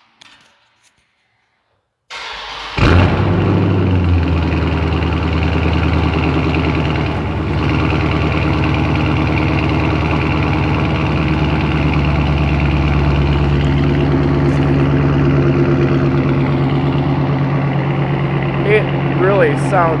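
A 2021 Dodge Charger Scat Pack's 6.4-litre 392 Hemi V8 is remote-started through its rear exhausts. It cranks briefly about two seconds in and catches with a sudden loud burst, then idles steadily.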